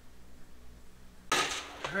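Quiet room tone with a low hum, then, a little past halfway, a sudden clatter of hard objects just before a man starts to speak.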